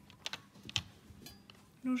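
A few light clicks and knocks of small plastic cosmetic bottles and caps being moved about by hand in a pot.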